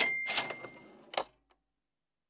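Short logo sting sound effect: three sharp clicks over about a second, the first with a bright ringing ding that fades out.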